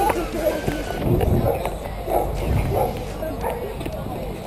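Riders' voices on a giant swing, in short exclamations without clear words, over low wind noise on the action camera's microphone as the swing moves through its arc.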